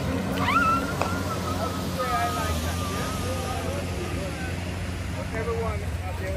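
Distant voices calling out, with drawn-out wavering cries, over a steady low hum.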